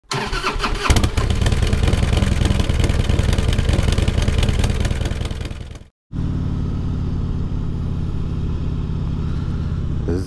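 Kawasaki VN1500 V-twin cruiser engine, loud and revving hard, starting abruptly and fading out after about six seconds. After a short break, the same bike runs at a steady, even note while riding along.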